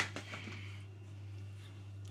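A single sharp knock, a plastic measuring cup set down on the kitchen counter, followed by a few faint light ticks over a steady low electrical hum.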